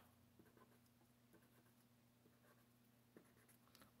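Near silence with a few faint, short strokes of a felt-tip marker on paper as small minus-sign dashes are drawn.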